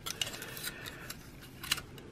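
Hard plastic parts of a transforming action figure clicking as they are rotated and shifted by hand: scattered light clicks, with a louder cluster near the end.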